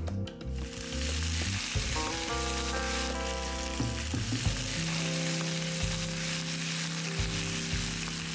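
Raw chunks of bell pepper, onion and garlic sizzling as they fry in olive oil in a frying pan, a steady sizzle that sets in about half a second in.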